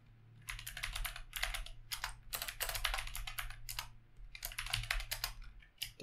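Typing on a computer keyboard: quick runs of keystrokes, with a short pause about four seconds in, over a faint low steady hum.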